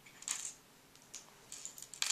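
Small plastic Lego pieces clicking as a minifigure is pulled apart: a brief rustle near the start, then several light clicks in the last second.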